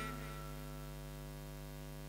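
Steady electrical mains hum from the microphone's amplification chain, an unchanging low buzz with a ladder of evenly spaced overtones, heard in a gap between spoken phrases as the last word's echo fades away at the start.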